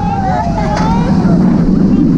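Wind rushing over the front-row microphone and the steady rumble of a Bolliger & Mabillard hyper coaster train running down its steel track, with long gliding screams from the riders.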